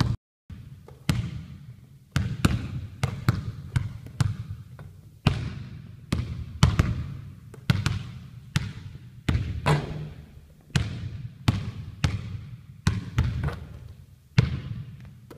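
A basketball being dribbled on a hardwood gym floor: sharp bounces at roughly two a second in an uneven rhythm, each ringing on in the hall's echo. There is a brief break in the sound just after the start.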